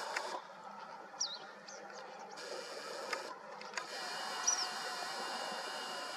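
Open-field ambience: a steady hiss with two short, high bird chirps, one about a second in and one past the middle.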